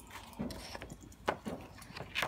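Handling noise from unstitched lawn fabric and plastic packaging being lifted and unfolded: a few short, irregular rustles.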